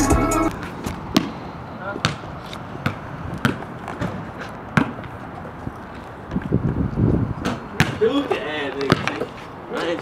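A basketball bouncing on a concrete driveway: single bounces, roughly one a second, with voices near the end. Hip-hop music cuts off about half a second in.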